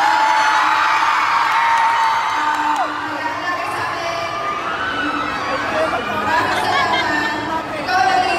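Arena crowd cheering and whooping, with one long held whoop for about the first three seconds that drops off at its end, over a woman talking into a microphone through the PA.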